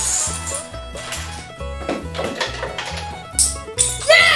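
Background music with a regular bass pattern, a note about every half second, and a few short clicks about halfway through and near the end.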